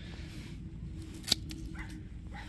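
A single sharp snip about a second in: pruning shears cutting through a woody grape cane.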